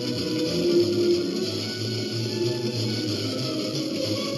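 Music with guitar playing through an FM tuner tuned to a distant station on 97.1 MHz, received at low signal strength, with a steady hiss underneath.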